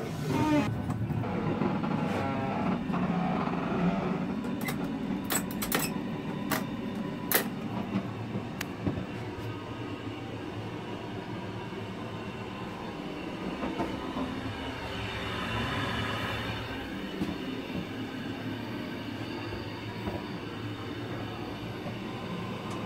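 Steady running rumble of a Bernina Express railway carriage, heard from inside. A few sharp clicks come between about four and eight seconds in, and a brief swell of hiss comes about two-thirds of the way through.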